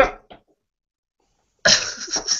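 A man's laughter trails off in the first moments, then about a second of dead silence, then a loud, breathy vocal outburst from a man near the end.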